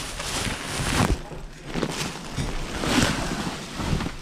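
Plastic bags and plastic wrapping crinkling and rustling as hands rummage through them, in two louder swells about a second in and about three seconds in.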